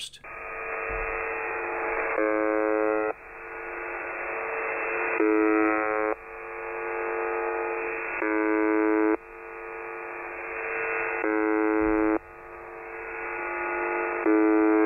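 The Russian shortwave station UVB-76, 'the Buzzer', on 4625 kHz, heard through a shortwave receiver: a monotonous buzz tone about a second long, repeating every three seconds, four times, over radio static that swells up between the buzzes.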